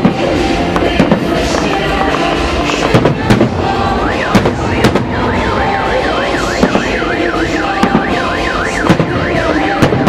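Aerial firework shells bursting one after another, over music. From about four seconds in, an electronic siren sweeps up and down about twice a second.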